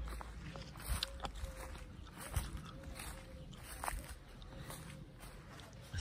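Footsteps through dry, cut grass: a few irregular soft crackles and rustles.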